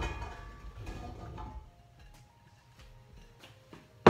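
Diced quince pieces dropping from a bowl into a stainless-steel pot, the pot ringing and fading over the first second or so, then a few faint clicks.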